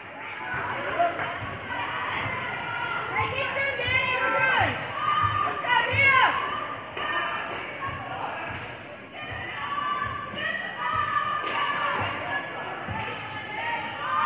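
A basketball being dribbled on a gym floor, thudding repeatedly, under the voices of the crowd in a large echoing gym.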